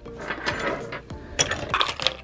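Small metal sewing-machine parts (presser feet, bobbins and a plate) clinking against each other and the plastic tub as they are handled and dropped into soapy water to soak; a few sharp clinks.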